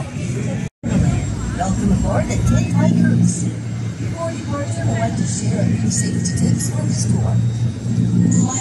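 Steady low drone of river cruise boat engines, with people's voices chatting over it. The sound drops out completely for a moment under a second in.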